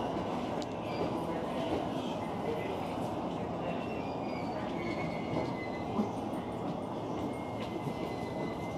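E233 series 7000-number electric train running slowly into a terminal platform as it brakes to a stop, heard from behind the cab. A steady rumble with thin, high squeals that come and go.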